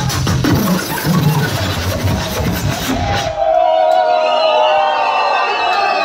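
Neurofunk drum and bass played loud over a club sound system, with fast drums and heavy bass. About three seconds in, the drums and bass drop out into a breakdown of sustained, gliding higher tones.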